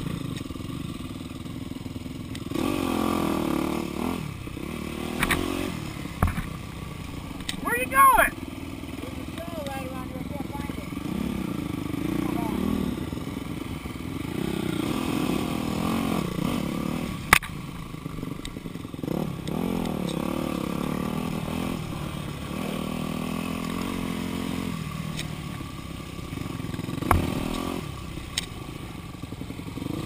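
Yamaha dirt bike engine ridden on a trail, revving up and falling back again and again as the throttle is worked, with a shout about eight seconds in and a couple of sharp knocks later on.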